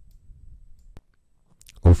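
A pause in a man's reading voice, with faint low hum and a single sharp click about a second in. His voice comes back in loudly near the end.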